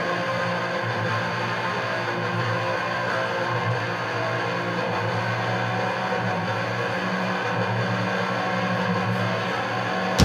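A live band holding a quiet, steady ambient drone of sustained guitar tones, with no drums or sharp hits.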